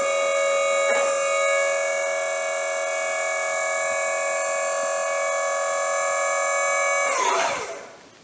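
Wood-Mizer LT40 sawmill's hydraulic pump running with a steady whine as the log turner is raised, then winding down and stopping about seven seconds in.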